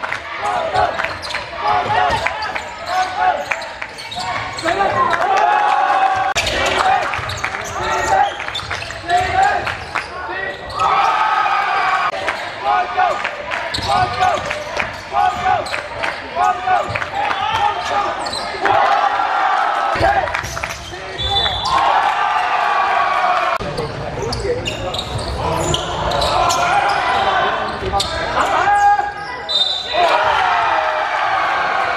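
A basketball bouncing on a hardwood gym floor during live play, with players and spectators calling out, all echoing in a large sports hall.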